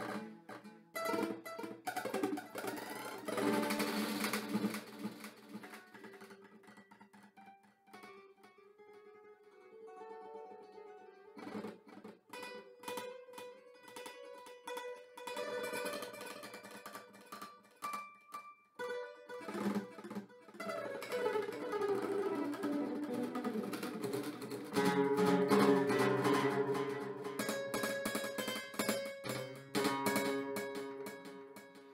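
Solo acoustic guitar playing an étude, notes plucked by hand. There is a quieter passage about a quarter of the way in, and the playing grows fuller and louder in the last third.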